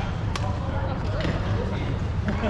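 Badminton racket striking a shuttlecock once with a sharp smack about a third of a second in, over the steady low hum and faint voices of a sports hall.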